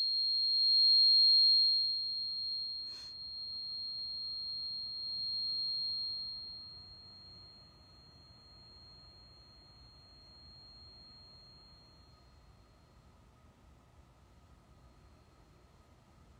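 Angel-frequency tuning fork, struck with a rubber mallet, ringing a single high steady tone. The tone is loud at first and fades slowly over about twelve seconds. A soft tap comes about three seconds in.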